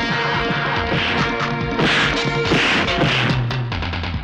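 Film fight sound effects: about four loud hits and crashes in quick succession, over a dramatic background score.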